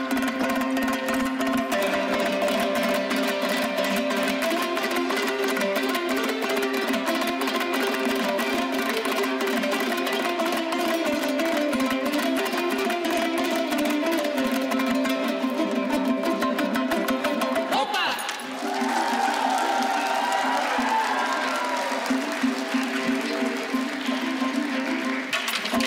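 Ensemble of Kazakh dombras playing fast, rhythmic strummed folk-fusion music. About eighteen seconds in the music dips briefly, and a sliding, wavering melody line comes in over the strumming.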